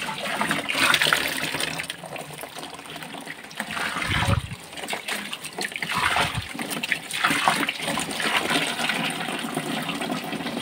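Water gushing out of the bottom outlet of a plastic tub and splashing onto a concrete floor, in uneven surges, as the old water is flushed out during a water change. Two short low bumps come about four and six seconds in.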